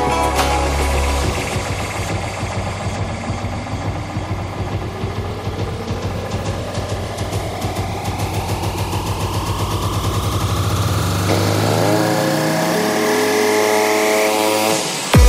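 Psytrance build-up: a synth sweep rising steadily in pitch over a fast pulsing rhythm. The deep bass drops out about three-quarters of the way through and sustained synth chords come in, leading to the drop.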